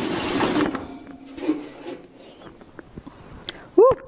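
Kitchen handling noises at an open oven: a brief rush of noise at the start, then a few scattered light clicks and taps. A voice starts just before the end.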